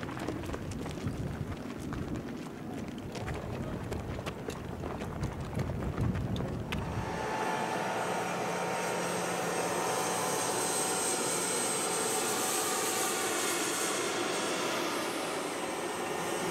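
A low rumble with scattered knocks and clicks for about the first seven seconds, then the steady high whine of an M1 Abrams tank's gas turbine engine running.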